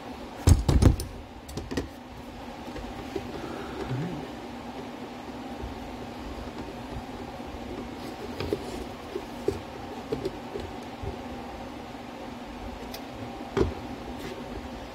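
Knocks and clatter of tools and plastic parts being handled on a workbench, loudest about half a second in, then a few scattered light clicks over a steady low background hum.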